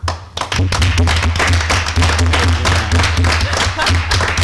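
A roomful of people applauding, the clapping breaking out about half a second in and carrying on thickly.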